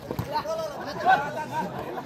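Voices of players and onlookers calling out and chattering over a volleyball rally, with one sharp hit of the ball just after the start.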